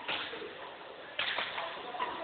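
Badminton racket strings striking the shuttlecock during a rally: two sharp hits about a second apart, each with a short ring of hall echo.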